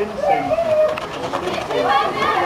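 Indistinct voices of people talking, with one drawn-out vocal tone part way through.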